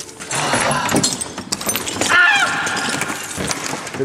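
Leafy branches rustling and scraping against clothing and the camera as someone pushes through a bush. A short high sound falls in pitch about two seconds in.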